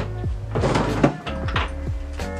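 A wooden drawer of a chest of drawers being pulled open, a scrape of wood on wood that ends in a sharp knock about a second in, over background music with a steady beat.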